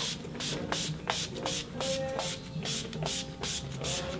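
A fine-mist pump bottle of glitter makeup setting spray being pumped over and over at a face. There are about three or four short sprays a second in an even, quick rhythm.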